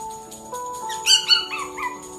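Pomeranian puppy giving four short, high-pitched calls in quick succession, over background music.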